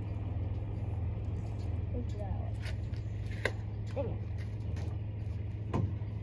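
An engine idling steadily with an unbroken low hum. A single sharp click comes about halfway through.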